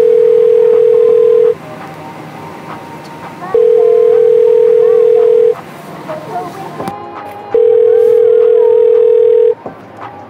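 Telephone ringback tone on an outgoing call: a steady single-pitched tone of about two seconds, sounding three times with two-second gaps between. It keeps ringing with no answer.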